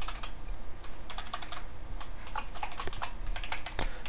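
Computer keyboard being typed on: a run of quick, irregular keystrokes over a faint, steady low hum.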